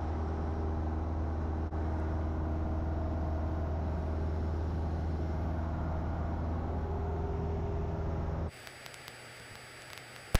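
Cessna 172 Skyhawk's four-cylinder piston engine and propeller running steadily, a low drone heard from inside the cockpit. The drone cuts out abruptly about eight and a half seconds in, leaving only a faint hiss.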